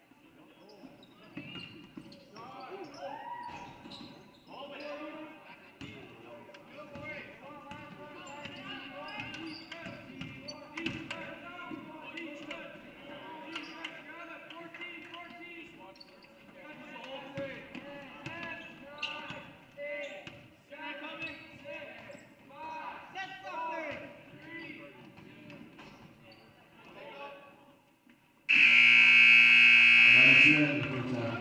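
Basketball dribbling and bouncing on a hardwood gym floor amid voices of players and spectators during live play. Near the end, the scoreboard buzzer sounds loudly and steadily as the game clock hits zero, signalling the end of the period.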